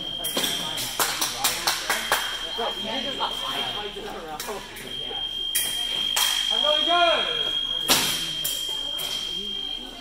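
Épée fencing bout: sharp clicks and clatter of blade contact and footwork, over a high steady electronic tone from the scoring box that sounds in stretches, longest from about halfway through to the end. A brief shout is heard near the middle.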